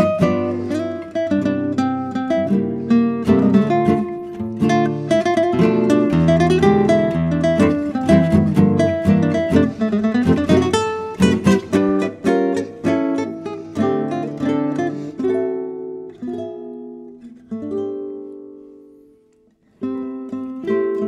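Instrumental acoustic guitar music: a busy passage of plucked notes and chords. About fifteen seconds in the playing thins to a few ringing notes that die away almost to silence, and new notes come in sharply at the very end.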